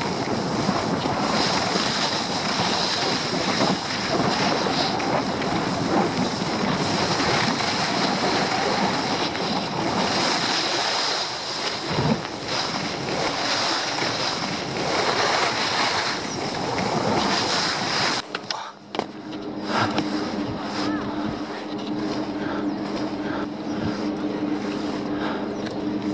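Wind rushing over the camera microphone and skis hissing and scraping on groomed snow during a downhill run. About eighteen seconds in, the rush drops away suddenly, leaving a quieter noise with a steady low hum of a few held tones.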